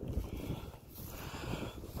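Wind buffeting the microphone outdoors, an uneven low rumble with faint hiss above it.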